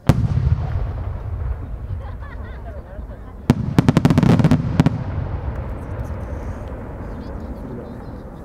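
A No. 8 senrin-dama (thousand-ring) firework shell: one sharp bang as the shell bursts right at the start, a long rumbling echo, then about three and a half seconds later a rapid string of a dozen or so sharp pops as its many small sub-shells burst, the loudest part, fading back into rumble.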